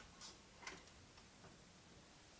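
Near silence with a few faint, unevenly spaced ticks.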